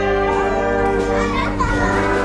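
Wind band of brass and saxophones holding sustained chords, with children's voices calling and chattering over the music.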